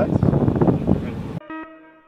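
Noise inside a moving car with a voice over it, cut off suddenly about one and a half seconds in. A faint ringing note with overtones follows and fades, the start of a guitar piece.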